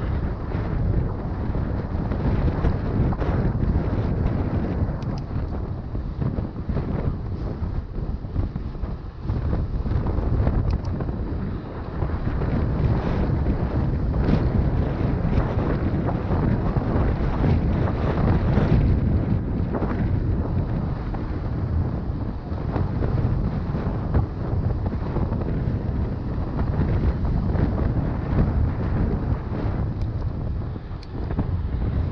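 Wind rushing over a GoPro Hero 6 Black's microphone as a mountain bike is ridden along a road. The loud, steady rumble is broken by many small knocks and rattles.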